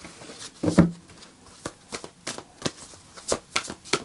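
A deck of tarot cards being shuffled by hand: a faint rustle of cards with irregular soft clicks as they slide and tap together. The cards are sticking together a little.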